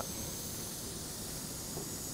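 Steady, even background hiss (room tone), with no distinct sounds.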